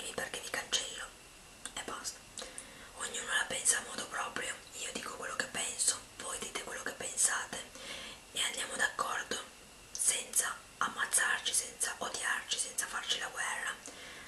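A woman whispering in Italian, in short phrases with brief pauses between them.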